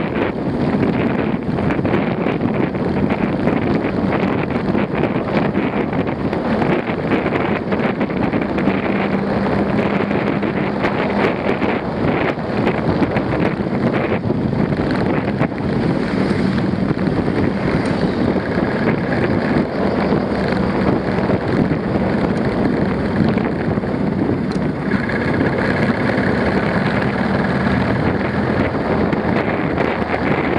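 Steady wind rushing over the microphone of a camera on a moving motorcycle, with a low engine hum coming and going underneath.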